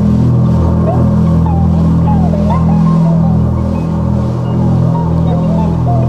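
Jazz fusion band playing live: loud held low notes with a sliding, bending melody line above them.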